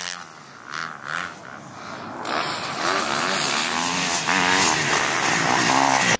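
Motocross dirt bike engine revving on the track, its pitch rising and falling with the throttle. It is fainter at first and grows louder from about two seconds in.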